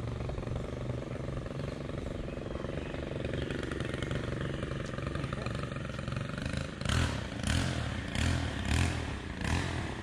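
An engine running steadily, then from about seven seconds in rising and falling in rhythmic surges, a little under two a second.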